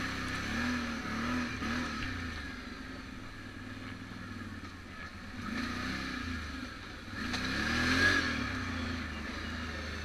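ATV engine running as the quad is ridden, its pitch rising and falling with the throttle several times, loudest about eight seconds in.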